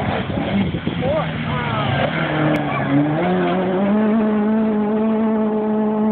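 Rally car engine running at high revs as the car approaches on a gravel forest stage, its pitch climbing about three to four seconds in and then holding steady and loud.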